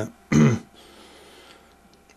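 A man coughs once, a short, loud throat-clearing cough about a third of a second in.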